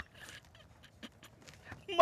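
A man's soft, breathy laughter in a few faint short bursts.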